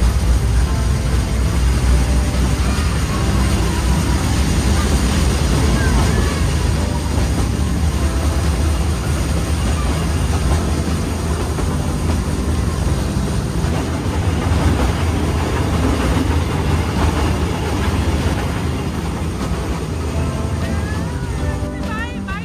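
Ride in the open carriage of a narrow-gauge train on the move: a steady low rumble with rushing noise from the running train.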